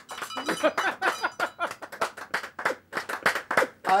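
A man laughing: a fast run of short, breathy bursts, several a second.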